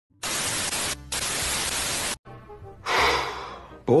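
Television static hiss lasting about two seconds, with a brief dip about a second in, cutting off suddenly. It is followed by faint background music and a softer rush of noise.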